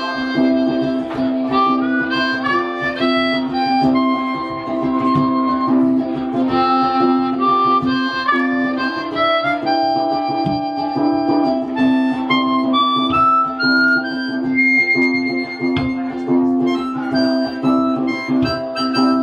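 Harmonica taking an instrumental solo, a melody of stepping notes, over strummed ukulele and electric bass in a live band.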